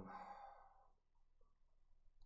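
A man's sigh: a breathy exhale straight after a spoken "um", fading out within the first second.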